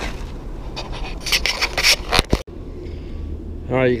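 Footsteps crunching on a gravel lot, a quick run of irregular steps in the middle that stops abruptly, over a steady low background rumble.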